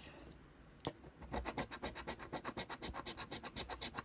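A large coin scratching the coating off a paper scratch-off lottery ticket. A single tap comes about a second in, then quick, even back-and-forth strokes at about nine a second.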